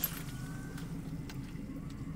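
An engine running steadily, a low, even hum with a slight pulse.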